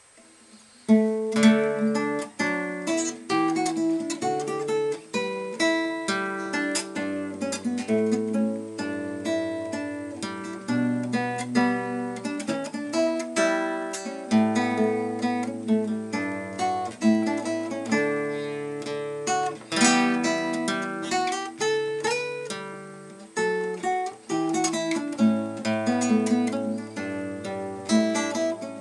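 Solo classical guitar, fingerpicked: a melody over a moving bass line, starting about a second in.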